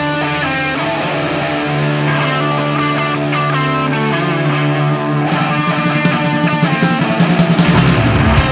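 Instrumental stoner-rock intro from a recorded band: electric guitar lines over a held low bass note, the band growing fuller and more rhythmic about five seconds in.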